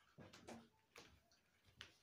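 Near silence: quiet room tone with a few faint, short clicks and taps.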